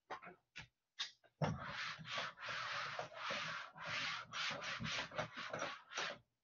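Whiteboard eraser wiping a dry-erase board: a few light taps, then from about a second and a half in a quick run of about ten back-and-forth rubbing strokes of uneven length.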